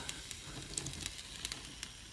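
Faint sizzling of water on rocks heated by a ceramic heat emitter as it flashes to steam, with small scattered crackles.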